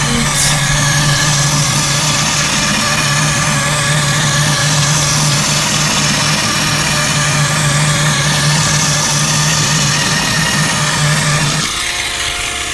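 Small LEGO Power Functions electric motor running steadily, whirring through its gears as it drives the robot's wheels around on a hardwood floor. The hum stops shortly before the end.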